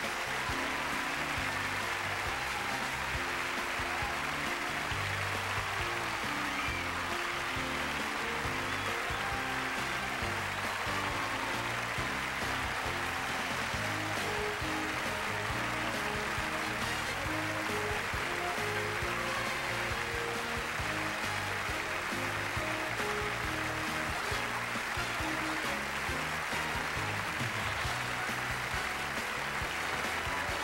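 Game show closing-credits theme music with steady studio audience applause beneath it.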